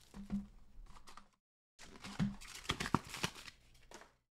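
Trading-card packs and cards being handled on a table: short rustles of pack wrappers and light clicks and taps as cards and packs are set down. The sound drops out completely for a moment about a second and a half in, then comes back busier.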